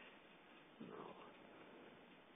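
Near silence: faint steady room hiss, with one faint brief sound about a second in.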